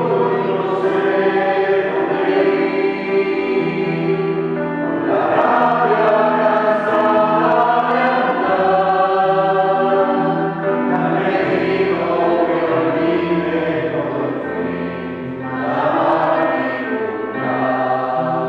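A mixed choir of children's and adult voices singing a sustained hymn-like song, accompanied by an electronic keyboard.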